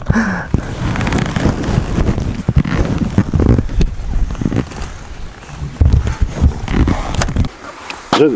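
Wind buffeting the camera microphone: an irregular, gusty low rumble that rises and falls, with no engine running.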